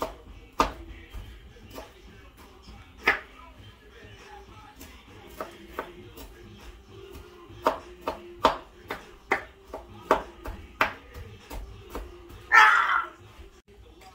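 Chef's knife chopping broccoli and cauliflower on a wooden cutting board: irregular knocks of the blade on the board, coming faster about eight seconds in. Near the end, a louder burst of scraping as the chopped pieces are cleared off the board.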